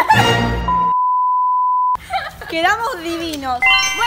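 Censor bleep: a single steady, high beep lasting just over a second, with all other sound cut out beneath it, just after a loud outburst of voices at the start.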